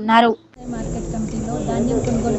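A woman speaking, cut off about a third of a second in; after a brief gap, a steady background hiss with a voice faintly under it.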